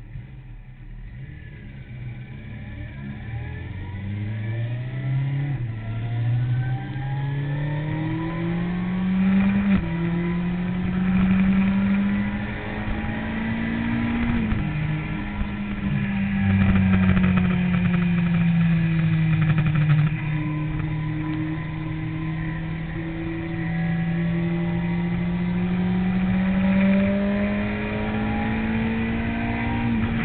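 Sport motorcycle engine heard from an onboard camera, getting louder as it pulls away and accelerates through the gears, its pitch climbing and then dropping at each shift. Around the middle the revs drop briefly, then the engine holds a fairly steady note that rises and falls gently.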